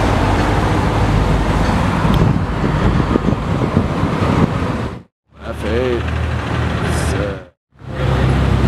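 A classic convertible cruising slowly by in city traffic, with a dense, steady low rumble of engine and road noise. About five seconds in, the sound cuts out briefly twice, with a voice in between.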